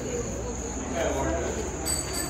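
Crickets chirring steadily, a continuous high-pitched trill, with faint voices in the background.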